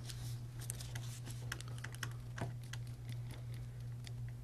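Soft, irregular clicks and taps, several a second, with one somewhat louder tap a little past halfway, over a steady low hum.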